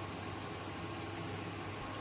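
Leafy greens and egg cooking in a frying pan on a gas stove, giving a steady, even hiss with a faint steady hum underneath.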